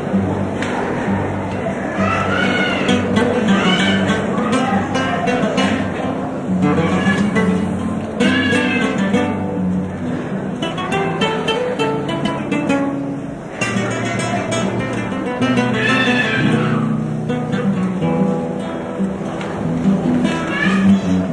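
A Cádiz carnival comparsa's band playing the instrumental opening of its potpourri: Spanish guitars strumming and picking over a steady beat, with a melody carried high above.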